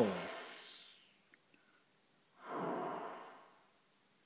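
Serge modular noise patch, Timing Pulse noise frequency-modulating an oscillator through its VC Aux input to give a split noise effect that is not centred on the pitch. It fades out over the first second and a half, a high whistle in it sliding down in pitch as it goes. About two and a half seconds in, a soft rush of noise swells and dies away within a second.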